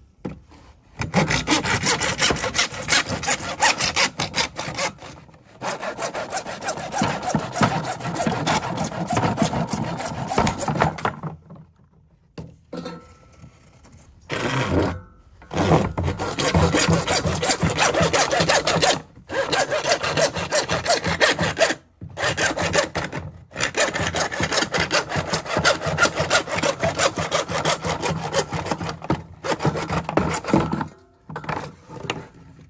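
Lenox 18-inch PVC/ABS hand saw cutting through hard plastic with rapid back-and-forth strokes. It runs in several long spells broken by short stops, the longest pause coming about eleven seconds in.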